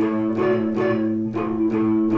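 Stratocaster-style electric guitar picked with a plectrum: notes struck about two to three times a second, each ringing on until the next.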